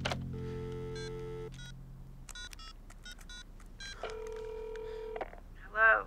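Telephone keypad beeps as a number is dialed, a quick series of short tones, then a ringing tone in the earpiece for about a second, starting about four seconds in.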